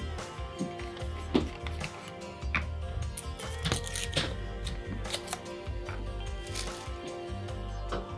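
Background music, over which a plastic pill bottle's screw cap is twisted off and its foil inner seal is peeled away, giving scattered light clicks and crinkling, busiest in the middle.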